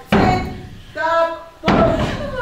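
Two heavy thumps about a second and a half apart, with a brief woman's voice between them.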